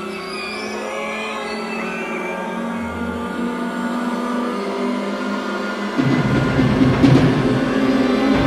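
Contemporary orchestral music with sustained low tones, overlaid in the first two seconds by high sliding calls from synthesized wildlife samples. About six seconds in, a louder, denser low orchestral passage enters.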